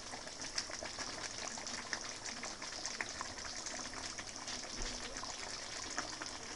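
Potatoes boiling in broth in a wide pan: a steady bubbling hiss with many small pops.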